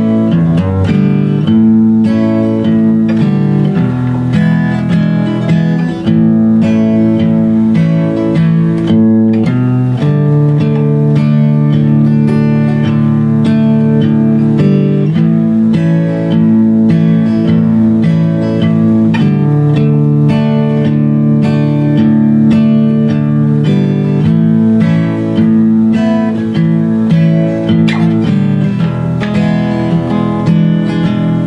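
Guitar playing the slow instrumental intro of a country song, held chords changing every second or two with lower bass notes beneath.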